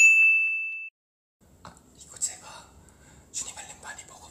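A bright single ding chime, a transition sound effect, that rings out and fades within about a second. After a brief silence, faint ASMR sounds begin: soft whispering and small taps.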